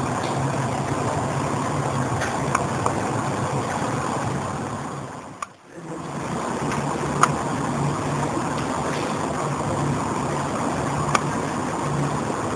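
Steady rushing room noise with a low hum. It drops out briefly about five and a half seconds in, and a few sharp clicks sound through it.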